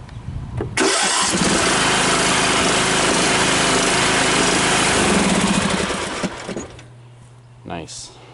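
John Deere L108 riding mower engine started by its key with the seat, brake and reverse-mowing safety switches bypassed. It catches about a second in and runs loudly, then drops to a much quieter low hum about six and a half seconds in. It starts without anyone on the seat or on the brake, which shows the bypass works.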